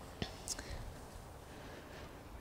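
A quiet pause with faint outdoor background, a couple of soft clicks early and a short breathy hiss about half a second in.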